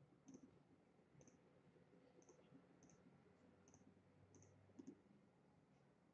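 Faint computer mouse clicks placing points one by one: about eight single clicks roughly a second apart, with a quick pair near the end.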